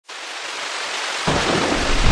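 Thunderstorm: a steady rain hiss fades in, and a deep rumble of thunder comes in just over a second in and builds.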